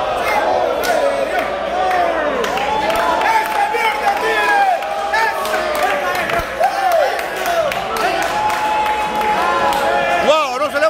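Boxing crowd cheering and yelling at a knockout, many voices shouting at once, loud throughout.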